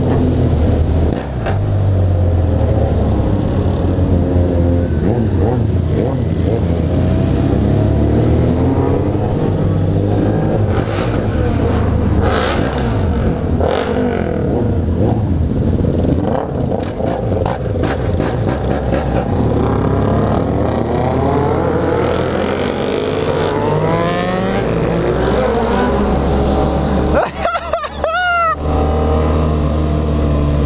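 Motorcycle engines in a group ride: the BMW F800GS parallel-twin with its open, exhaust-only pipe running underneath while several motorcycles around it rev up and down, their pitches rising and falling, with a few sharp pops. A brief burst of high rising sweeps comes about two seconds before the end.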